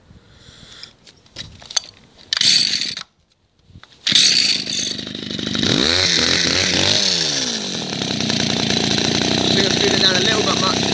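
Two-stroke hedge cutter engine being restarted after cutting out, its carburettor mixture screw just turned back down half a turn: a short rasp about two and a half seconds in, a second of quiet, then the engine catches about four seconds in. Its pitch swings up and down for a couple of seconds, then it settles into a steady run.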